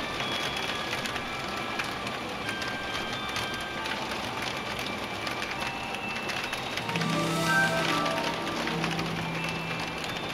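Steady rain falling, with background music playing over it; the music fills out with a low held note about seven seconds in.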